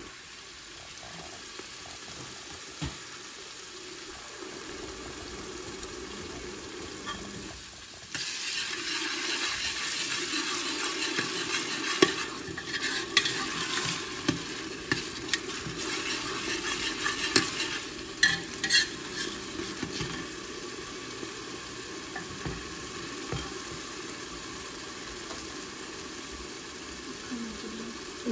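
Potato-and-pea curry masala sizzling in a pan while a spoon stirs it. About eight seconds in the sizzle grows louder, and through the middle the spoon clicks and scrapes against the pan.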